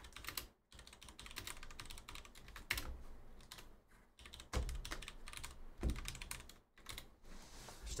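Typing on a computer keyboard: irregular runs of key clicks, with a couple of low thumps about halfway through.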